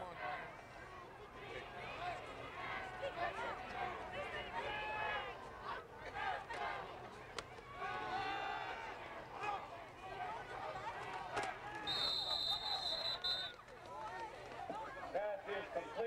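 Spectators talking and calling out, with a single steady, high whistle blast about a second and a half long near the end: a football referee's whistle ending the play.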